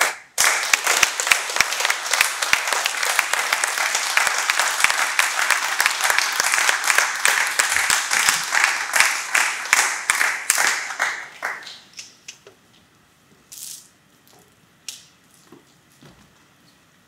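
A small audience applauding, a dense patter of hand claps that dies away after about eleven seconds, followed by a few faint knocks and shuffles.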